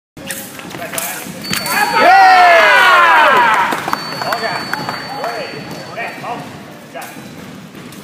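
A person's loud, drawn-out shout, its pitch falling over about a second and a half, with a few sharp knocks just before it and quieter talk after.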